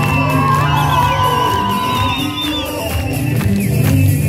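Kolbastı dance music with a steady beat, and guests whooping and cheering over it.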